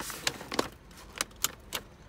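A paper grocery bag crackling and a car seatbelt strap sliding across it as the bag is belted into the passenger seat, heard as about five sharp crackles and clicks.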